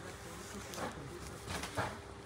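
Faint steady buzzing hum, with soft cloth rustling from a cotton saree being unfolded toward the end.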